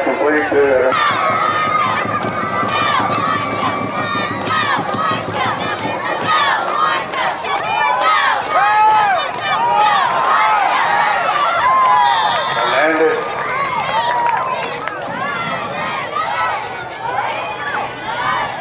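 Many voices shouting and yelling at once, overlapping throughout: a football crowd and sideline players calling out while a play is run.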